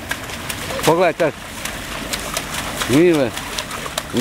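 Young children's voices calling out without words: two short calls about a second in and one longer call, rising then falling in pitch, about three seconds in.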